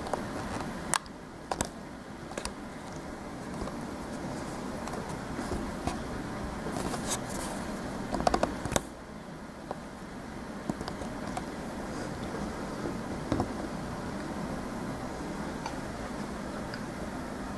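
Steady low room noise with a few sharp clicks and light knocks: a cluster about a second in and another around eight seconds, as the camera is handled and shifted.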